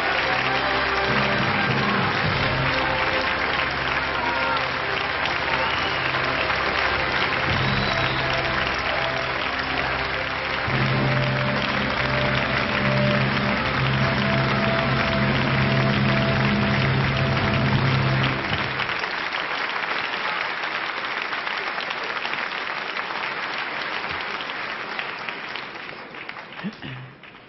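A large theatre audience applauding continuously over music with long held low notes. The music stops about two-thirds of the way through, the applause carries on alone, and it fades toward the end.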